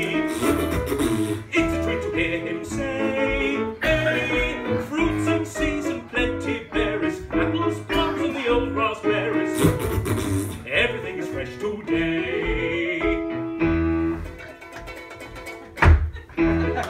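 Instrumental break of a comedy music-hall song: ukulele and piano accompaniment with the tune carried by blown raspberries in place of words. A sudden loud hit at the very end.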